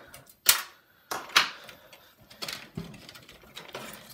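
Sharp clicks and knocks of metal parts as a hard drive is unscrewed, unplugged and pulled from a desktop PC case's drive bay. The two loudest come about half a second in and near a second and a half in, with lighter taps after.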